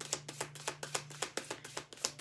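A deck of tarot cards being shuffled by hand: a quick, even run of card slaps, about seven a second, over a low steady hum.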